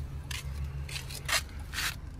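Three brief scrapes about a third of a second, a second and a third, and nearly two seconds in, over a steady low hum.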